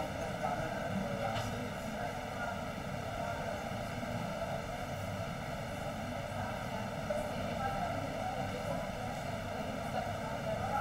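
Steady background noise with a faint hum, unchanging throughout.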